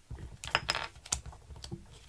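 A few sharp clicks and light rustles of a small plastic sheet of glue dots being handled on a craft mat, mostly around the middle of the stretch.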